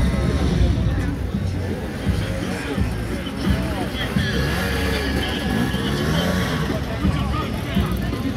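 A crowd of spectators talking and shouting, with an enduro dirt bike's engine running underneath.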